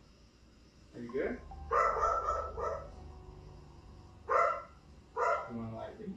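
A series of short pitched cries from the footage: four in about five seconds, the second held for about a second. It is the unexplained "weird noise" of the clip, somewhere between a bark and a voice.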